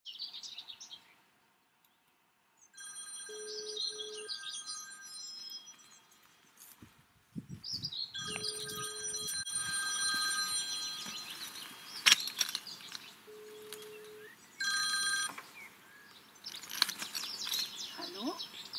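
An old rotary telephone ringing in three bursts, the last one short, with birds chirping around and between the rings. A single sharp click comes about midway.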